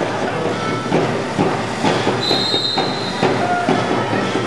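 Crowd noise and voices echoing in an indoor pool hall during a water polo match, with a single short, shrill whistle blast, most likely the referee's, a little over two seconds in.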